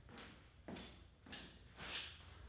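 Faint footsteps and shuffling: about four soft steps in two seconds as a person walks across a room.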